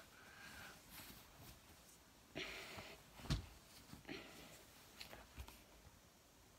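Faint fabric rustling from someone changing clothes, with a soft knock about three seconds in.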